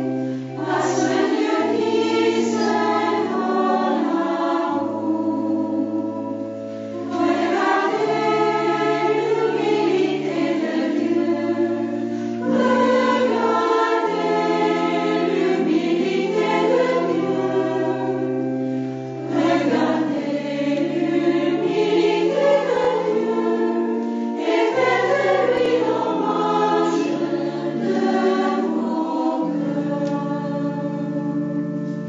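Choir singing a hymn in slow phrases over steady, held low accompaniment notes, with short pauses between phrases about half a second in, around six to seven seconds in and around nineteen seconds in.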